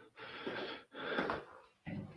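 A person breathing out hard twice, two breathy huffs of about half a second each.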